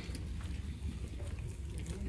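A pause in speech: faint outdoor background noise with a steady low rumble underneath and no distinct event.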